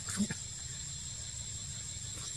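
A macaque gives one short, low grunt with a faint click just after the start, over steady forest background noise with a thin, high continuous whine.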